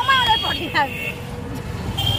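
Street traffic and road rumble heard from inside an open rickshaw moving through city traffic, with a thin high steady tone for about the first second.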